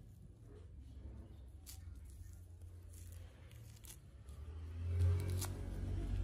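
Orange rind being torn off the fruit by hand, with scattered short tearing crackles over a low steady hum that grows louder near the end.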